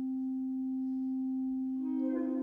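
Symphonic wind band sustaining a long held note that thins to one nearly pure low tone, with a new, fuller chord entering near the end.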